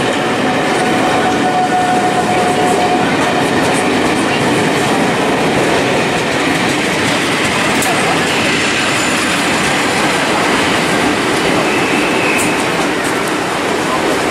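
Loco-hauled passenger train running past close by: a steady rolling rumble of coaches on the rails, then a West Coast Railways diesel locomotive going by, with a thin wheel squeal in the first few seconds.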